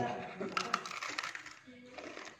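Several light, sharp clicks of chopsticks against dishes during a shared meal, with a quiet voice at the start.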